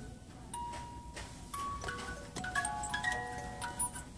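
Hand-cranked Curious George musical jack-in-the-box playing its tune as single chiming notes, with clicks from the crank mechanism. The notes come faster in the second half.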